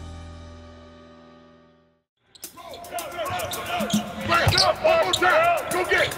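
Background music fades out over the first two seconds. After a short gap, basketballs bounce repeatedly on a court, with shoe squeaks and players' voices.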